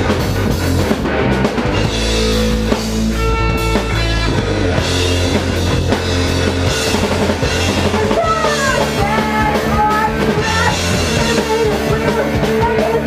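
Live hardcore punk band playing loud: distorted electric guitars over a pounding drum kit. A higher wavering line comes in about eight seconds in.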